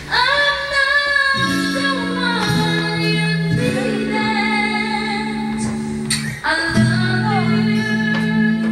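A woman singing a slow ballad live into a handheld microphone, holding long notes with vibrato over sustained accompaniment chords. She takes a short breath about six and a half seconds in and starts a new phrase.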